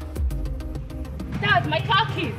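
Background film music with a steady beat; about one and a half seconds in, a high-pitched voice cuts in over it.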